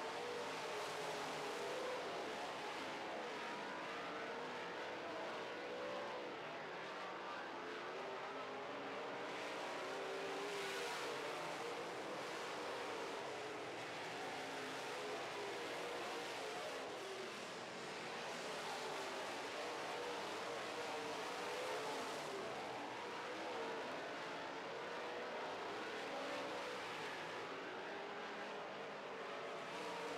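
Dirt-track modified race cars running at race speed, several engines heard together, their pitch rising and falling as the cars circle the oval.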